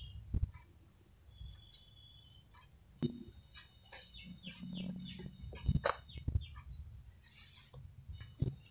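Faint, scattered clicks and taps of a metal spoon against a ceramic plate, mostly in the second half, with a brief thin high tone early on.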